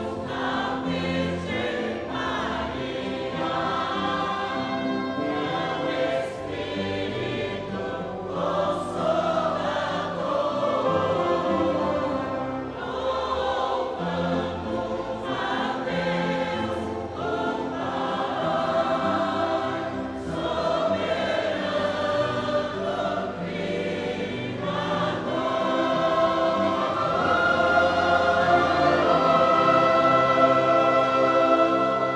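A choir singing a hymn with musical accompaniment, its sustained notes growing louder near the end.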